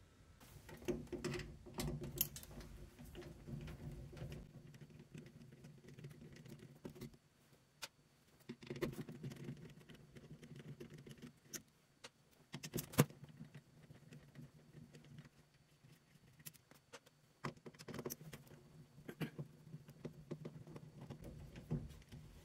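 Faint scattered clicks and scrapes of a hand screwdriver working loose the small metal screws on the washer's back panel that hold the water inlet valve assembly. The sharpest clicks come about nine and thirteen seconds in.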